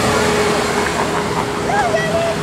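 Lamborghini Gallardo Spyder's V10 engine running as the car drives slowly past and away, over a steady hiss of street noise.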